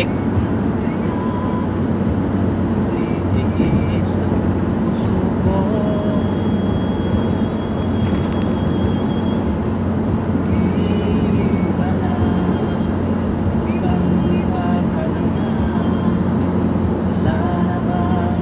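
Steady low drone of engine and tyre noise inside a car's cabin, cruising at highway speed.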